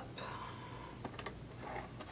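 Faint rustling and a few light clicks from a paper trimmer being handled while a blush label is set under its clear cutting bar, just before the cut.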